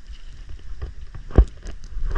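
Choppy lake water slapping against a small inflatable boat, with irregular low rumbling and splashes and one loud thump a little past halfway.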